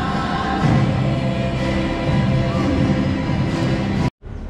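A church choir singing a hymn with long held notes.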